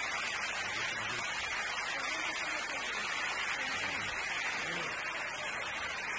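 Audience applauding steadily, with voices mixed in.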